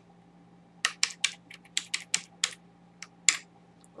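Computer keyboard typing: a quick run of about fifteen keystrokes starting about a second in, the last one the loudest.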